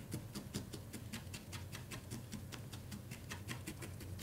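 Felting needle stabbing repeatedly into a core-wool bird body: a faint, quick, even tapping of about seven pokes a second.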